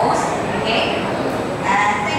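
A young person's voice through a handheld microphone and classroom loudspeaker, speaking in short bursts, with the words not made out.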